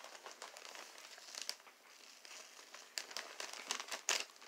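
Clear plastic zip bag of pipe tobacco crinkling as it is handled, in faint scattered crackles that come thicker a little after a second in and again near the end.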